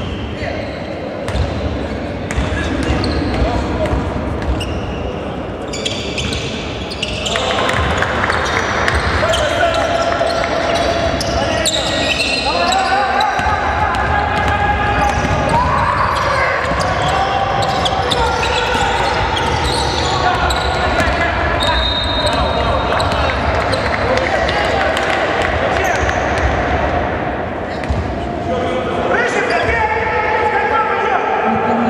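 Basketball game sound in a large gym hall: a ball bouncing on the hardwood court, shoes squeaking and voices calling out. It grows louder about seven seconds in.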